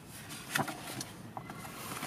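Paper instruction booklet being handled and opened: a few short rustles and taps, about half a second in and again near the middle, over a faint background.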